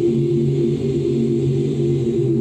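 Recorded women's barbershop a cappella singing, the voices holding a sustained close-harmony chord, played back over a video call.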